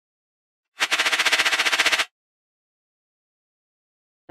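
A short intro sound effect for an animated logo: a rapid rattling burst of about a dozen pulses a second, lasting just over a second, that stops abruptly.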